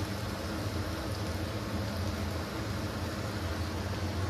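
A steady low hum with a hiss over it, under the soft trickle of chai poured from a saucepan through a metal tea strainer into mugs.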